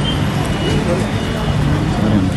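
Street noise: traffic with indistinct voices.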